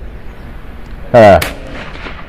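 A single 12-gauge shotgun shot just over a second in, firing an experimental bunker buster slug: one short, very loud report.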